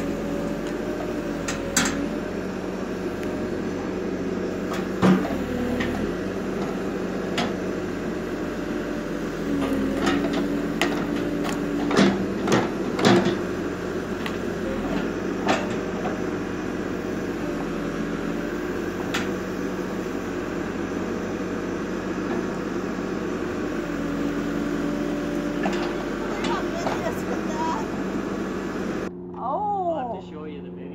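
Case Extendahoe backhoe loader's diesel engine running steadily, its pitch shifting as the hydraulics take load. Several sharp knocks and clanks from the digging bucket, a cluster of them about twelve seconds in.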